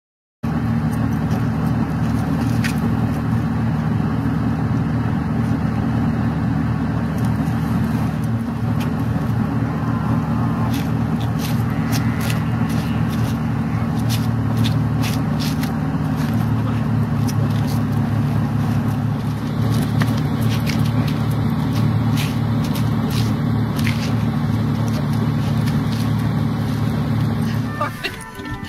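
A vehicle engine idling steadily, with scattered light clicks, until it cuts out just before the end: the engine stalls.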